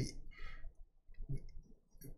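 A lecturer's speech breaking off into a short pause filled with a few faint clicks, over a steady low hum.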